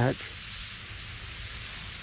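Lawn sprinkler spraying water from a garden hose onto newly planted grass plugs, a steady hiss.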